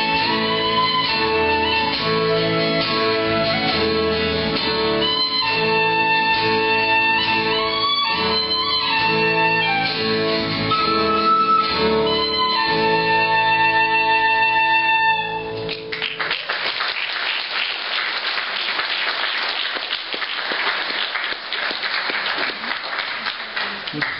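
Instrumental close of a hymn: a small flute carries the melody over violin and guitar, stopping about 15 seconds in. An audience then applauds through the rest.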